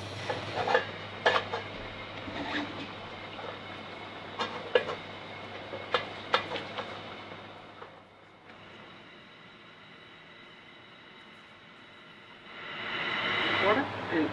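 Kitchen work: a string of sharp clinks and knocks from a steel pan lid and utensils on the worktop over the first seven seconds or so, then quieter handling of food on a cutting board.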